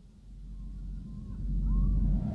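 A low rumble fading in and swelling steadily louder, with a few faint chirp-like glides over it in the second half.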